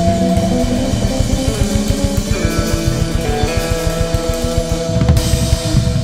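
Live instrumental jazz-rock played by an electric guitar, a five-string electric bass and a drum kit. Held guitar notes sit over a fast, even pulse in the low end, and a loud crash comes about five seconds in.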